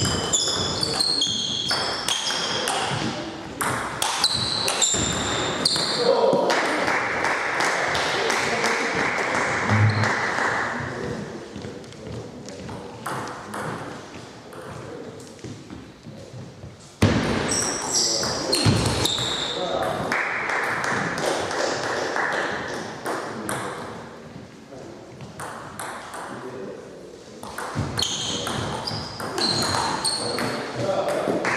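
Table tennis rallies: the plastic ball clicking back and forth off the bats and the table in quick, ringing pings. There is one run of strokes at the start, another from about seventeen seconds in, and a short exchange near the end, with gaps between points.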